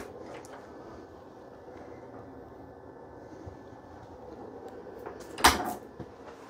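Norcold refrigerator door shut with a single sudden thump about five and a half seconds in, over a faint steady hum.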